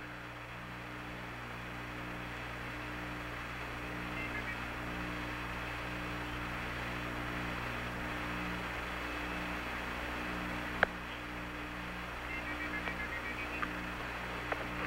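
Open air-to-ground radio channel from Apollo 11 while Houston waits for the crew's reply: a steady hiss of radio static over a steady low hum, with a single sharp click about eleven seconds in.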